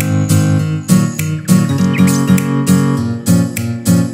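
Background music: acoustic guitar strummed in a steady rhythm.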